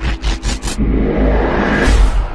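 Cinematic trailer sound design: a deep rumble under a quick run of four or five sharp glitchy hits, then a whoosh that swells up to a peak near the end.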